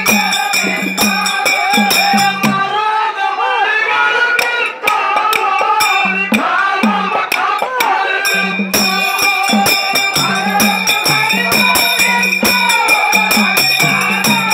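Kannada dollu pada folk song performed live: voices singing with a steady beat of jingling metal percussion and a pitched drum. The drum drops out about three seconds in and comes back near the middle, while the singing and jingling carry on.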